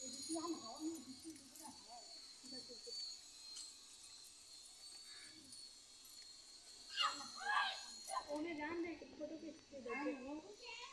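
Women talking indistinctly, in short stretches at the start and again, louder, from about seven seconds in. A faint steady high hiss runs underneath.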